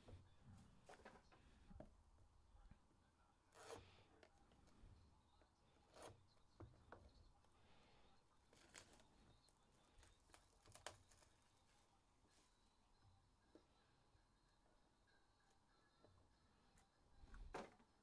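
Near silence with a few faint, scattered rustles and taps of cardboard trading-card boxes being handled, the loudest near the end.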